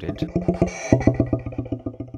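Electronic, machine-made sound: a rapid stutter of about ten pulses a second that settles onto a steady low buzz about halfway through.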